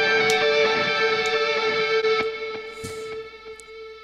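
Electric lead guitar played back from a mix with a quarter-note delay on it: one long held note rings and slowly fades away.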